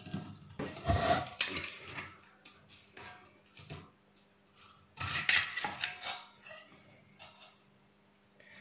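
Screwdriver taking out the screws that hold an LED chip to a flood light's aluminium heat-sink plate: small metallic clicks, clinks and scrapes, busiest about a second in and again about five seconds in.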